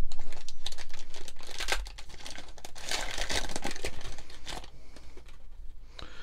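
Crinkling and tearing of a trading-card pack's wrapper as it is ripped open and peeled back by hand, in two busy spells with a short lull about two seconds in, tailing off near the end.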